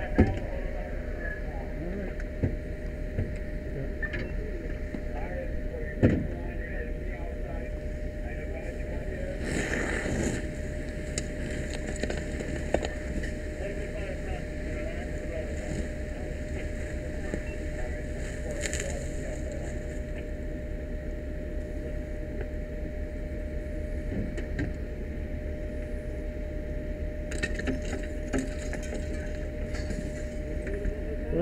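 Steady low rumble of a running fire apparatus engine with a constant whine over it, broken by a few sharp knocks, the loudest just after the start and about six seconds in.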